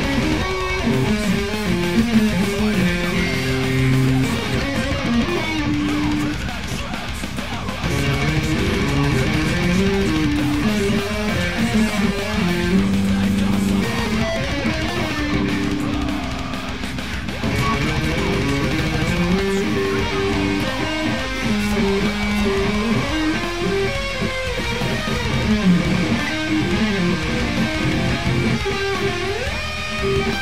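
Music: an ESP LTD M-300FM electric guitar playing a metalcore riff in a run of quickly changing notes, along with the band's recording of the song.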